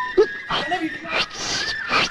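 People's voices in short cries and yelps, with a sharp click just after the start and two brief bursts of hiss in the second half.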